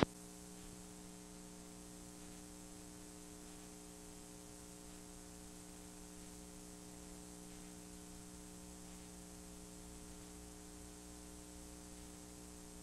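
Steady electrical mains hum over a faint hiss, unchanging throughout, on the soundtrack of a blank stretch of videotape after the recording has cut off.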